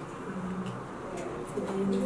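A woman's low-pitched voice close to the microphone, in short phrases.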